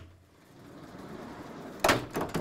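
A sliding lecture-hall board being pulled down in its metal frame with a hooked pole: a rising rumble as it slides, ending in a loud knock near the end.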